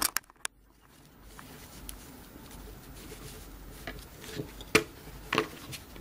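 Faint handling noise of jute rope being pressed and rubbed against a glass vase, with a few sharp light clicks.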